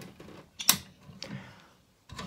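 A sharp click, then a few faint knocks and rattles, from the glass front doors of a terrarium being handled and opened.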